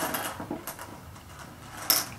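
Small clicks and rustles of jelly beans being picked out of their box by hand, with a sharper click near the end.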